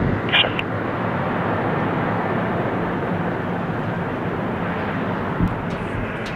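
FedEx MD-11 three-engine jet freighter on its landing roll after touchdown: a steady, fairly loud jet rush that slowly eases off.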